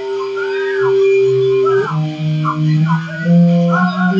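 Guitar notes held and ringing, changing to new notes about two seconds in and again near the end, with a howling call that rises and falls in short glides over them.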